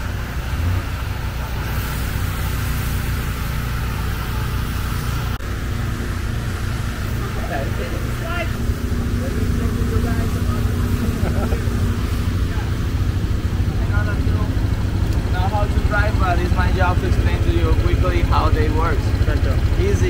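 ATV engine idling with a steady low rumble, while people talk in the background, more from about halfway through.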